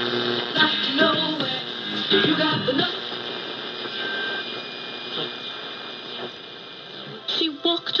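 Philco Model 75 tube radio playing AM broadcasts through its electromagnetic speaker: a voice over music at first, then a few seconds where the regular static hiss is mostly what is heard, before a talker comes in loudly near the end.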